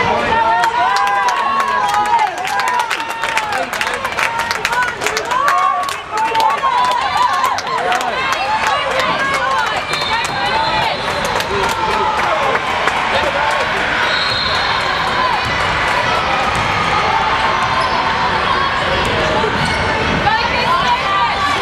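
Basketballs bouncing on a hardwood court in a large indoor stadium, with many quick bounces in the first several seconds, over the echoing voices of players and spectators.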